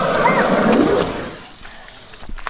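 Asian elephant squirting a trunkful of water into its mouth to drink: a wet, splashing gush for about the first second, then dying away.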